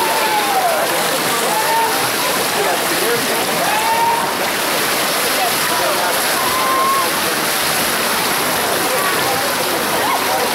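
Splashing of a backstroke swimmer's arms and kicks in a pool, under a steady din of many spectators' voices with shouts rising and falling.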